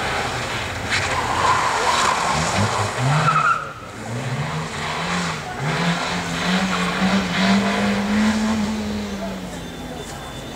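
Suzuki hatchback's engine revved hard and lifted off again and again, its pitch rising and falling several times before holding high for a couple of seconds near the end, as it is thrown through tight slalom turns. Short tyre squeals are heard in the first three seconds.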